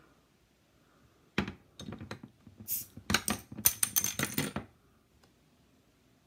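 Glass Coca-Cola bottle opened with a metal bottle opener: a few sharp clicks as the opener bites the crown cap, a short fizzing hiss as the cap lifts, then a quick run of metallic clinks and rattles. Only a brief release of gas, with no foaming over.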